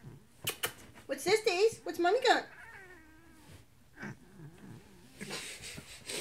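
Domestic cat yowling: two long calls with a wavering pitch, one about a second in and another just after two seconds, trailing off into a fainter, drawn-out moan.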